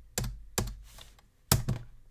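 Computer keyboard keys being pressed: a few separate keystrokes entering figures into a calculator, the loudest one about one and a half seconds in.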